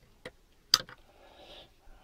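Sharp click of an AA cell being pulled out of a smart charger's sprung battery slot, with a fainter click just before it.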